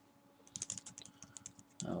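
Computer keyboard typing: a quick run of key clicks starting about half a second in.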